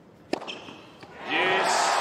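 A hard tennis serve: one sharp crack of racket on ball about a third of a second in and a lighter knock about a second in. Then a big arena crowd erupts into loud cheering and shouting as the ace saves a match point.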